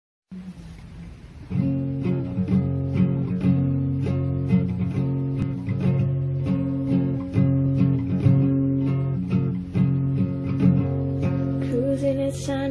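Acoustic guitar strumming the chords of a slow song intro, coming in about a second and a half in with a steady rhythm of strokes.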